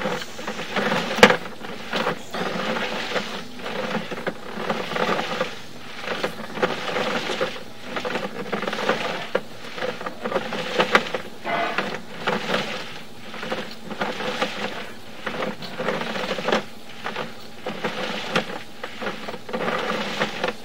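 Sewer inspection camera's push cable being pulled back through the line and wound in: an uneven rattling and scraping with scattered clicks over a steady hum.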